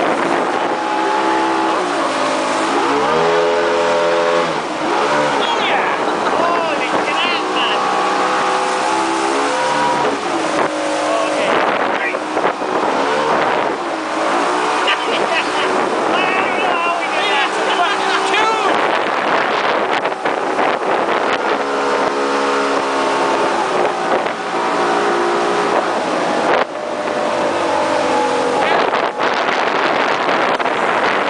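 Riverboat engine running under way, its pitch rising and falling again and again as the throttle is worked through the shallows, over the rush of water along the hull.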